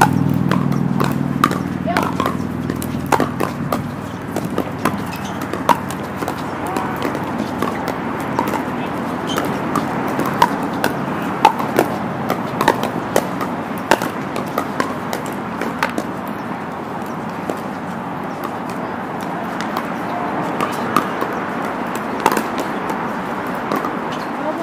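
Pickleball paddles striking plastic pickleballs in rallies: sharp, irregular pops, several a second at times, some louder and closer than others. Indistinct voices of players carry under the hits.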